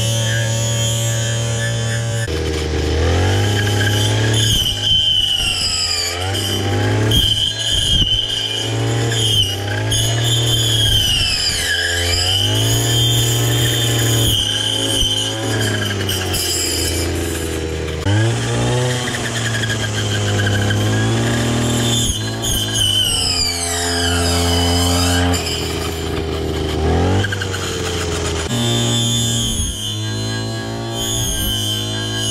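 Two-stroke engine of a 58cc Coocheer brush cutter running at high revs, its pitch sagging and recovering again and again as the metal blade bites into brush. Background music with a bass line plays over it.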